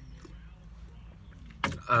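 Faint, steady low hum inside a car's cabin while a man sips from a tumbler. Near the end comes a sharp breath, then he starts to speak.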